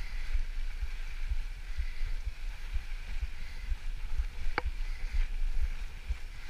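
Mountain bike rolling fast down a gravel dirt road: a low, uneven rumble from the bumps and the wind, with the tyres hissing over the gravel. A single sharp click about four and a half seconds in.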